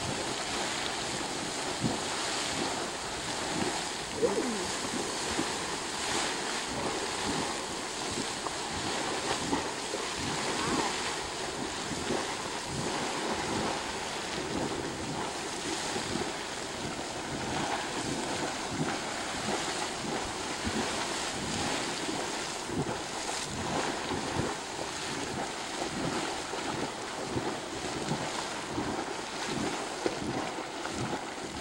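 Minute Man Geyser erupting: a steady rush of water and steam jetting from its sinter cone, with the splashing of falling water running through it.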